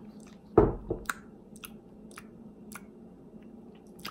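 Lip smacks and tongue clicks of a man tasting a sip of energy drink: a louder mouth sound about half a second in, then about four sharp smacks roughly half a second apart.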